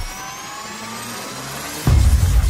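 Intro sound effect for an animated logo: a riser of several tones gliding steadily upward over a noisy whoosh, like a revving engine. It ends near the end in a sudden deep bass hit.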